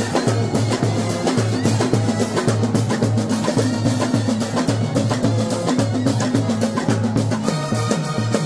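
Street brass band playing a song, with big bass drums beating a steady rhythm under snare strokes, and trumpets and saxophones carrying the tune.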